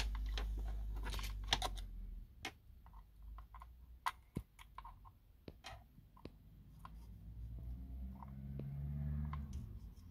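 Faint, scattered clicks and ticks of a small screwdriver and the motor pinion against the spur gear on an RC monster truck's plastic chassis, as the gear mesh is checked for play. A low hum sounds in the first two seconds and again near the end.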